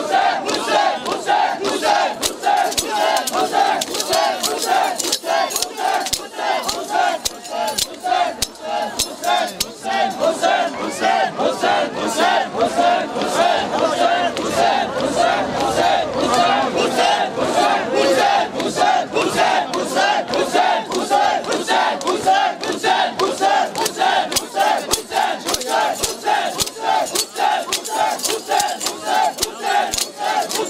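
A crowd of male mourners shouting a rhythmic chant in unison, over a steady run of sharp metallic clinks from zanjeer (bladed chains) being swung onto bare backs in self-flagellation.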